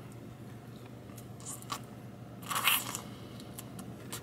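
A person biting and chewing meat off a bone-in chicken wing close to the microphone: scattered soft crunches and mouth clicks, the loudest crunch a little past halfway.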